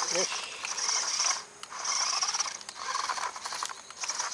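Toy RC off-road buggy's small electric motor and gearbox whirring in bursts as it is throttled on gravel, with stones crunching and rattling under its tyres; it dips briefly about one and a half seconds in. The low-slung car is catching on the gravel and struggling to move.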